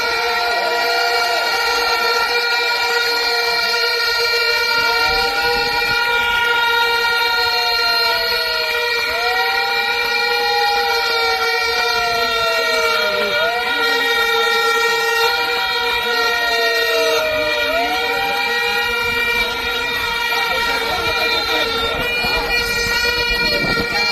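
Horns at a street rally, one steady blaring horn tone held throughout, with a siren-like wail that rises quickly and sinks slowly about every four seconds.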